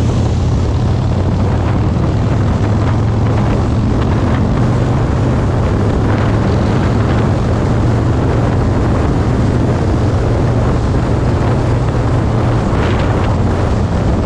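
Harley-Davidson Roadster's air-cooled 1202 cc V-twin engine running steadily at highway cruising speed, with wind rushing over the microphone.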